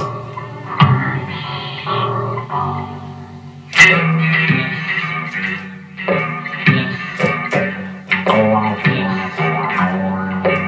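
Telecaster-style electric guitar played in a run of sharply struck chords and notes, each left to ring. The hardest strike comes about four seconds in.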